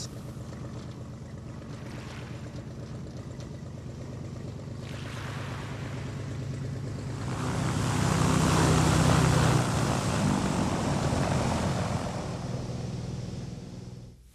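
A floatplane's engine running, with a steady low hum that builds to its loudest about eight to ten seconds in and then fades away.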